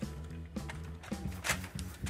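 Soft background music with held low notes and a light beat.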